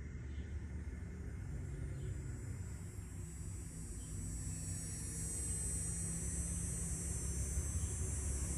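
Steady low hum and rumble of distant engine noise, with a high hiss that grows louder from about halfway through.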